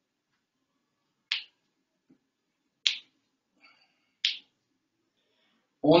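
Three short, sharp clicks about a second and a half apart, against near silence.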